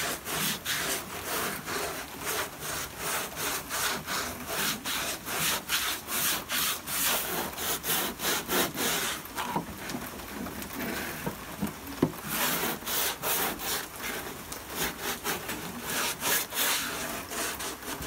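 Hand sanding with a long wooden sanding block, sandpaper on glued-up two-by-fours, scrubbing back and forth over filler on a fibreglass wing patch, about three strokes a second, fairing it flat into the wing's contour. A single sharp click about twelve seconds in.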